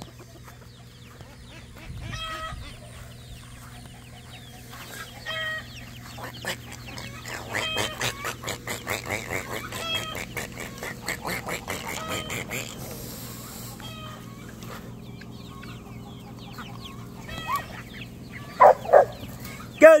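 Chickens clucking and calling, with a fast run of clucks through the middle and two loud short calls near the end, over a steady low hum.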